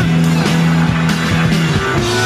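Live early-1970s German progressive rock band playing an instrumental passage, with a steadily held low note that changes near the end under sustained higher tones.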